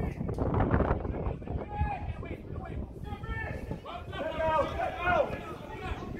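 Distant men's voices calling out across a football pitch, a few short shouts from about two seconds in, over a steady low rumble.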